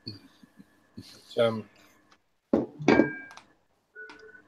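A lull in a conversation: mostly quiet, broken by a few short voice sounds, ending with a hesitant "uh" near the end.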